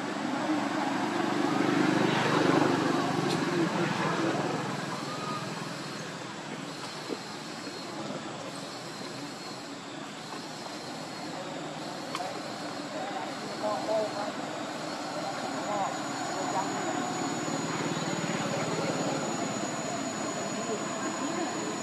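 Outdoor background noise: an engine passing swells and then fades over the first few seconds, with faint voices behind it.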